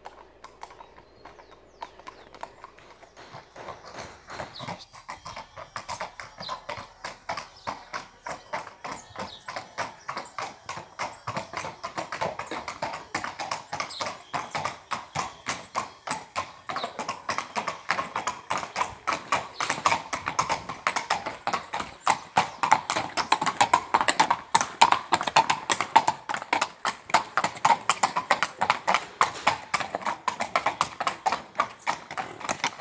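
Hooves of two Lusitano horses clip-clopping at a walk on a paved driveway, a quick uneven run of hoof strikes from the two animals together. The hoofbeats start faint and grow steadily louder as the horses come closer, loudest near the end.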